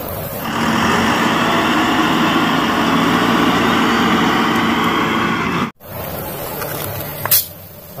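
Engine of an Agrimac wheel loader running steadily as the machine drives with a loaded bucket. It cuts off abruptly a little past halfway, leaving a quieter steady background.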